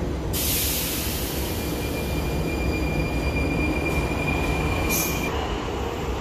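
Metro train moving at a station platform: a loud, even rushing noise with a steady high-pitched squeal that lasts from about a second and a half in until about five seconds in.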